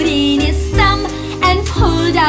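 Children's nursery-rhyme music: a bright melody over a steady, bouncy bass beat.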